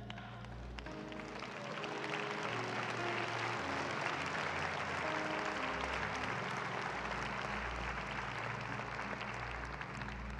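Congregation applauding, swelling up a second or two in and then holding steady, over soft church music with sustained low notes.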